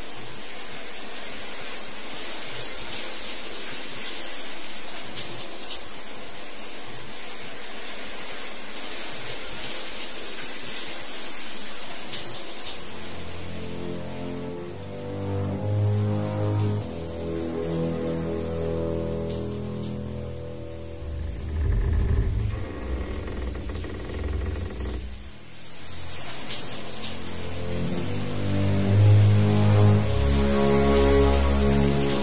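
Horror film soundtrack: a steady hiss, then about halfway through a tense score of low, sustained notes comes in and swells.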